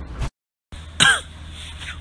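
A man makes a short, loud throat-clearing noise about a second in, after the sound cuts out completely for a moment.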